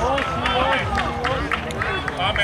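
Men's voices talking and calling out, several overlapping.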